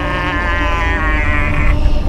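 A man's long, held scream at a steady high pitch, breaking off a little before the end, over a low rumble.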